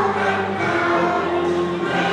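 Choral music: a choir singing slow, long-held notes over an accompaniment.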